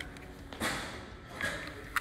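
Quiet room tone with faint handling noises: a short scrape about half a second in and a sharp click near the end as an ID card is swiped through a kiosk's card reader.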